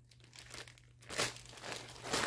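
Thin clear plastic bags crinkling as they are handled, in short irregular crackles after a brief quiet moment at the start.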